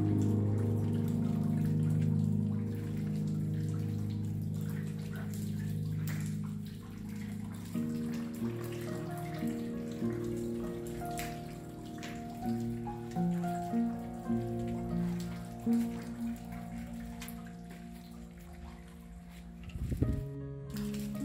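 Slow piano music of held notes and chords, with a steady patter of rain drops over it.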